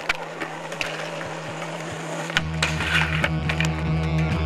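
Skateboard rolling on asphalt, with a run of sharp clacks and knocks from the wheels and board. A little past halfway, music with a heavy bass comes in under it.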